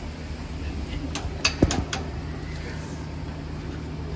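A few sharp metallic clicks about a second and a half in, from a wrench being fitted and turned on a truck's brake slack adjuster, over a steady low hum.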